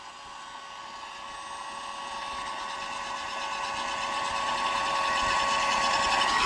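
Electric heat gun running on high: a steady blowing hiss with a faint motor whine, growing gradually louder. It is heating the spray adhesive under a worn sheet of sandpaper on an MDF board so the sheet will peel off.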